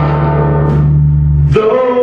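Live acoustic guitar and electric bass: a held low bass note under ringing guitar strings, then about a second and a half in the bass drops out and a man begins singing a long held note.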